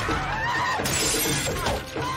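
Intro soundtrack music with sliding pitched sounds over a steady pulse, and a sudden shattering crash about a second in.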